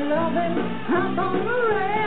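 Live rock band playing with electric guitars and a lead melody that slides up and down in pitch over steady chords.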